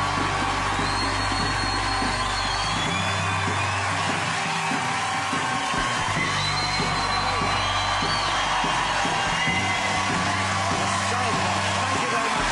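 Television show theme music with steady held bass notes, over a studio audience cheering and whooping.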